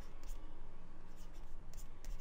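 Faint strokes of a stylus writing short digits by hand on a tablet.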